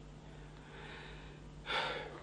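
A man's short, sharp intake of breath near the end, after a faint soft rustle.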